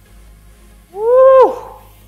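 A man's loud, drawn-out whoop about a second in, rising and then falling in pitch.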